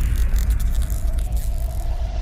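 Sound effect for a news channel's animated logo: a deep rumble under a fading whoosh with sparkly crackles, and a faint steady tone coming in about halfway through.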